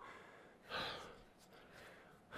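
A man's single heavy breath, a little under a second in: winded after a set of ab exercises, with his abs cramping.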